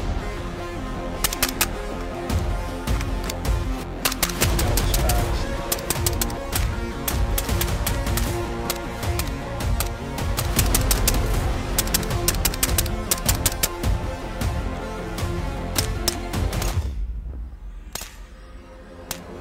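Suppressed 300 AAC Blackout AR-style rifle fired repeatedly over background music, many sharp shots in quick succession. The sound drops away suddenly about a second before the end.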